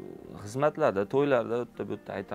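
A man's voice in a few loud phrases that swing up and down in pitch, with no clear words.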